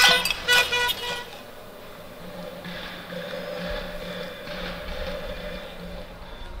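Metal pots and pans banged in a cacerolazo, sharp ringing clangs for about the first second. After a short lull, a vehicle horn is held in a long steady tone for a few seconds.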